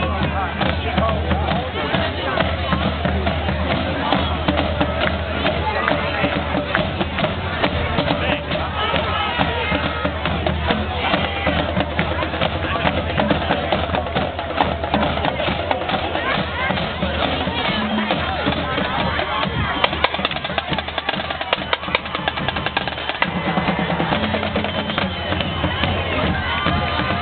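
High school marching band's drumline playing a percussion cadence of sharp drum strikes, over crowd chatter from the stands.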